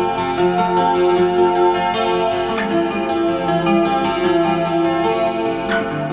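Twelve-string acoustic guitar played solo, plucked notes ringing on over one another in a flowing arpeggiated line. There is a short squeak from the strings near the end.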